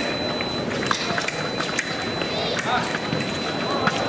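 Foil fencers' quick footwork on the piste: a scatter of short steps, stamps and sharp clicks, some of them foil blades touching.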